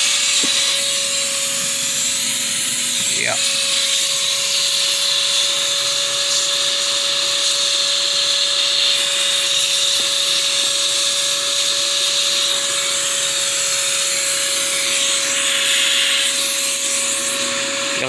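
Small vacuum running with a steady whine over a rushing hiss of air, its hose nozzle working down inside a beehive between the frames. A brief rising sweep comes about three seconds in.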